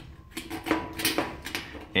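A metal car key scraping back and forth across a painted panel, faint and uneven, gouging scratches into the paint.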